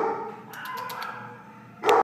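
Welsh Springer Spaniel mix whining, with a short loud bark near the end.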